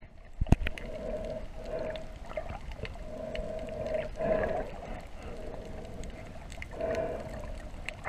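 Underwater sound picked up by a submerged action camera: a wavering hum that swells and fades every second or so, with a sharp knock about half a second in and scattered small clicks.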